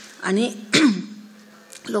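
A woman's voice through a microphone: a short spoken phrase or voiced sound in the first second, then a pause of about a second.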